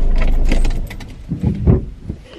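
Low, evenly pulsing rumble inside a car that stops abruptly under a second in, followed by a few soft knocks and rattles of handling in the cabin.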